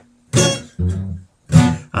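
Acoustic guitar strummed in three short chords about half a second apart, each dying away quickly, with brief quiet gaps between, ringing in a small bathroom.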